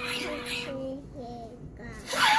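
A young child's voice singing, holding one steady note and then sliding through a few short notes.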